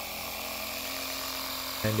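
Stanley jump starter's built-in piston air compressor running steadily, pumping up a bicycle tyre. Its worn plastic piston ring is patched with tape and pump oil, and the pump is working and holding pressure.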